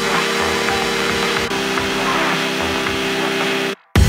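Electronic background music with held synth tones over a bass pattern; it cuts out abruptly for a moment just before the end, then comes back louder.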